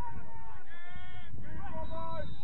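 Footballers shouting to each other across the pitch: a few drawn-out calls, one long high-pitched yell about a second in, over low outdoor rumble.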